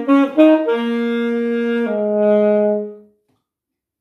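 Unaccompanied alto saxophone playing the close of a piece: a few quick notes, then a long held note and a lower final note that is held and then dies away about three seconds in.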